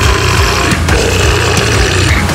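Loud deathcore music: dense distorted guitars and drums fill the whole range, with a heavy, pulsing low end.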